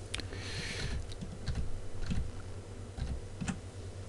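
Scattered faint clicks and taps from a computer keyboard and mouse being worked, with low thuds from the desk.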